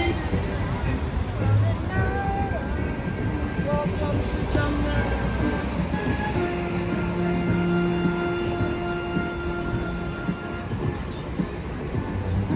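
Rumble of a vehicle moving through city traffic, heard from on board, with music and voices mixed in. A steady held tone sounds through the middle.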